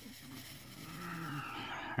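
A man's long wordless vocal sound, low and breathy, growing louder toward the end.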